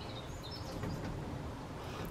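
Quiet background with a low steady rumble, and a few faint, high bird chirps in the first half-second or so.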